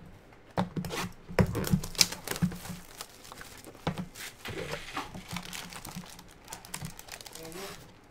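Foil trading-card pack wrappers crinkling and tearing, with sharp irregular clicks and rustles of cards being handled and set down on the stacks.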